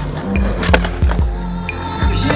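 Music with a steady low beat, over a skateboard rolling on asphalt, with one sharp clack about three-quarters of a second in.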